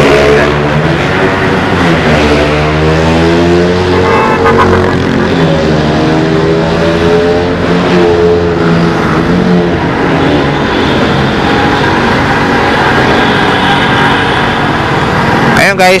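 Motorcycle engine running under way, its pitch rising and falling several times as the throttle opens and closes.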